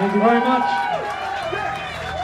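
People's voices talking and calling out once the song has stopped, with a held note ringing under them for about the first second.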